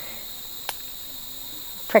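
Rainforest insects droning steadily in several high tones, with a single sharp click about a third of the way through.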